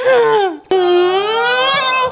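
Music with a sung vocal: a voice slides down in pitch, then holds one long note with a slight wobble near the end.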